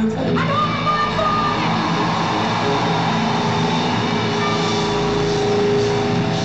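Live rock band playing loudly in an arena, with a rising note shortly after the start that settles into a held tone.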